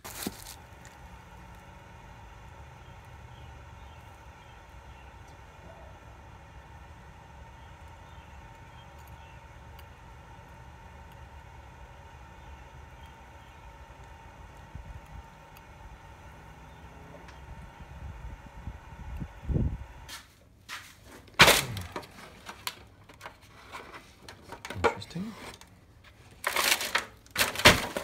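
A steady hum with a faint tone while metal is poured into a sand mold, then a sudden change to sharp knocks and crumbling as the sand mold is broken apart to free the casting. The loudest knocks come about a second and a half after the change and again just before the end.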